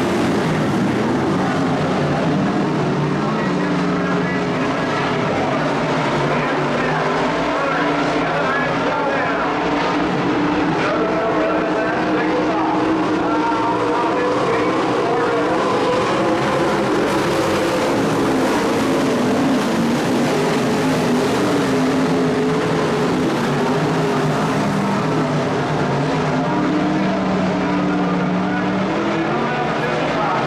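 A field of IMCA modified dirt-track race cars running on the oval, a steady loud engine noise whose pitch rises and falls as the cars go through the turns.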